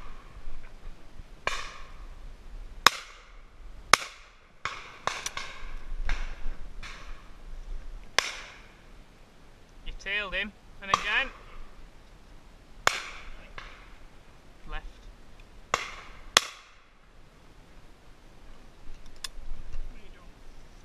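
Shotguns firing at driven duck: about a dozen shots at irregular intervals, some close and loud, others fainter and further off, each with a short echo.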